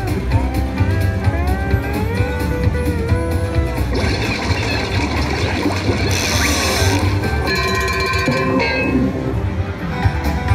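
Slot machine bonus-game soundtrack: country-style guitar music with gliding notes, giving way about four seconds in to a busier, noisier game sound effect with a bright burst near the middle, followed by a few held tones.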